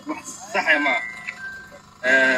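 A man speaking Somali to the camera, with a brief steady high tone about a second in.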